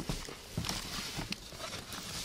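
Rustling and handling of a canvas tote bag and bubble-wrapped items inside a cardboard box, with a sharp knock at the very start.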